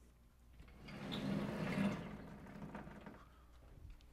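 Blackboard panel sliding along its track: a rolling, rubbing noise that swells about half a second in and fades out by about three seconds.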